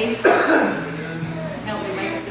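A person coughing once, loud and close, about a quarter of a second in, over a background of people talking.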